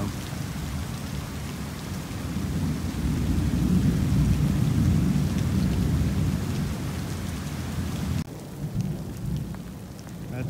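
Heavy rain falling steadily, with a long low roll of thunder that swells about three seconds in and slowly fades. About eight seconds in the rumble cuts off, leaving only the rain.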